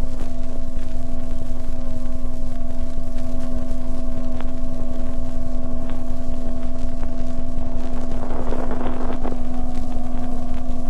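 Off-air shortwave radio reception preserved on a 78 rpm disc, with no speech: steady hiss and surface noise under a constant low whistle and a fainter higher tone, with a few faint clicks.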